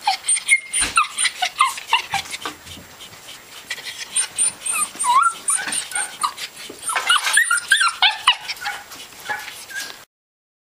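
Several dogs yapping and yelping in quick, overlapping short calls, in two busy spells with a lull about three to four seconds in.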